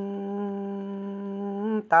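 A singer's voice holding one long, steady note without accompaniment in a Dao pa dung folk song. The note breaks off just before the end, as the next sung phrase begins.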